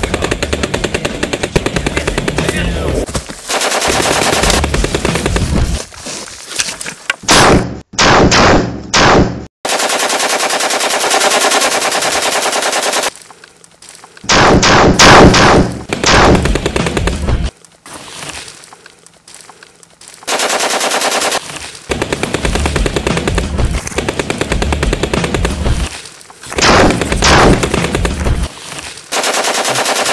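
Gunfire sound effects: long bursts of rapid automatic fire that stop and start again several times, with a few louder separate bangs among them.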